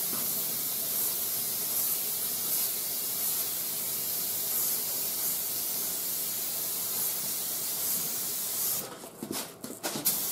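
Gravity-feed paint spray gun hissing steadily as compressed air atomises a coat of paint. Near the end the hiss stops and starts in a few short spurts before running steadily again.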